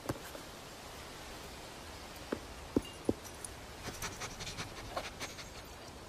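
Quiet room ambience: a faint steady hiss with a few soft taps a couple of seconds in, and faint ticks later on.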